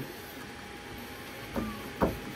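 The rubber timing belt of an Elegoo Neptune 4 Max's Y axis plucked by hand, giving one short low thump about one and a half seconds in, over faint steady background noise. A thump like this is what a belt at good tension gives, "probably pretty good."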